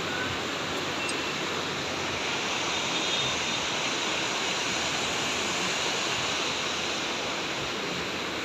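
Fast mountain river rushing through white-water rapids, a steady, even sound of churning water.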